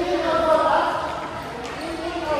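Many players' voices calling and chattering in a large gym hall, loudest about half a second in, with a thud or two like a ball or feet hitting the hard court floor.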